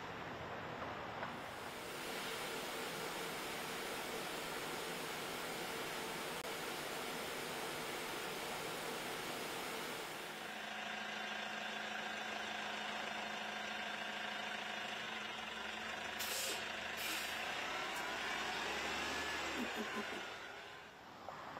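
City bus sounds: street traffic noise, then the inside of a moving city bus with a steady engine hum. Two short air-brake hisses come about three-quarters of the way through.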